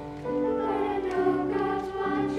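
A children's choir singing a slow song in held, sustained notes.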